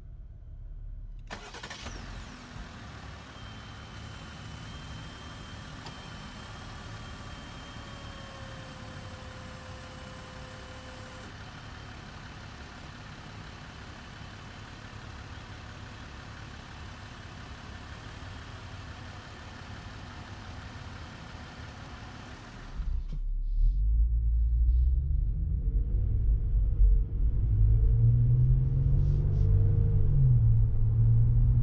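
2018 Jeep Wrangler JL Rubicon's 3.6-litre Pentastar V6 idling steadily, heard at the open engine bay. About two-thirds of the way through, the sound changes to a louder low rumble from inside the moving Jeep, with the engine note rising as it accelerates.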